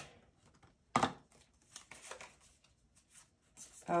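A cardboard tarot deck box and its cards being handled: one short scrape about a second in, then a few faint rustles, otherwise quiet.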